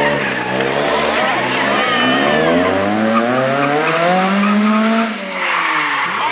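Small hatchback rally car's engine revving hard as it accelerates away, its note rising in pitch through the run, then dropping away suddenly about five seconds in.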